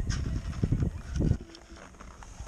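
Irregular dull thuds and knocks of ski boots and skis being handled, a few heavy thumps that die down for the last half second.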